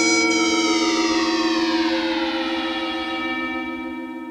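Electronic synthesizer music: sustained drone tones under a slow, siren-like downward pitch glide, the whole sound fading out toward the end.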